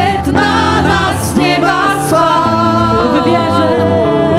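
Live Polish worship song: a woman singing lead with a band, keyboard and drums, and other voices singing along.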